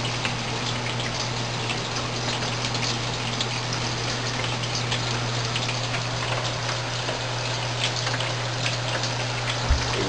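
Water spraying from small sprinkler nozzles on PVC risers in an aeroponic tote and pattering against its plastic walls. The nozzle holes have been drilled bigger, so they spray hard and wide. A steady low hum runs underneath, and there is one low bump near the end.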